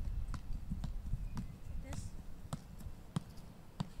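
Soccer ball being juggled: short, sharp taps of feet and knees striking the ball, irregularly spaced at roughly two to three a second, over a low rumble.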